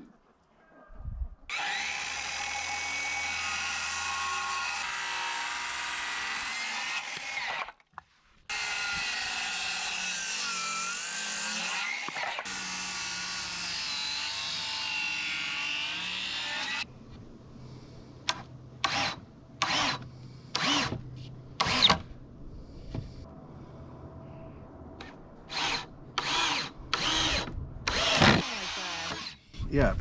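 Handheld circular saw cutting wooden boards in two long runs of several seconds each, separated by a brief stop, the motor pitch wavering as the blade works through the wood. These are followed by a string of short power-tool bursts, about a second apart, over a low steady hum.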